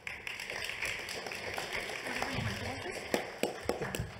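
Rustling with many scattered light taps and knocks, and faint voices in the background: the handling and stage noise of one panel speaker handing over the microphone and podium to the next.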